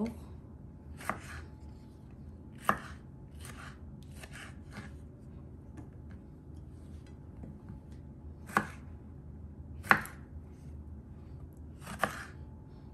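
Kitchen knife dicing tomatoes on a wooden cutting board: single sharp knocks of the blade hitting the board at irregular intervals, about eight in all, the loudest two coming near the end.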